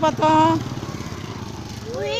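A motorcycle engine running at low revs close by, with a low, rapid, even pulse that comes in at the start.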